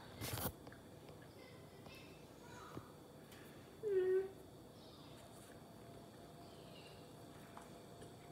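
A child's short voiced 'mm'-like sound about four seconds in, with a brief noisy burst near the start, while she chews a bite of donut; otherwise a quiet room.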